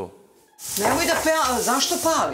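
Food sizzling in a saucepan on a gas stove as it is stirred: a steady hiss that starts about half a second in, after a brief quiet gap.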